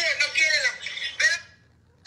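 A woman's high-pitched, honking laugh in a few quick bursts, stopping about a second and a half in.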